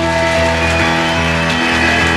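Live band playing an instrumental passage of a Greek rock song, with steady held chords and no singing.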